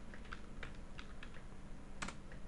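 Computer keyboard being typed on: a quick, light run of about six key clicks as a short terminal command is entered.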